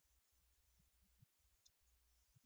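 Near silence: only a faint low rumble and hiss.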